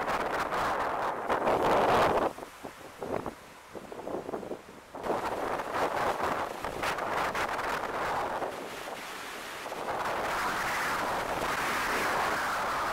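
Wind buffeting the microphone in uneven gusts, with a quieter lull from about two seconds in that ends abruptly near the five-second mark before the rushing noise returns.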